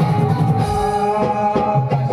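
Live Konkani jakhadi (shakti-tura) folk music: a dholki-style hand drum beats a steady rhythm under held melodic notes.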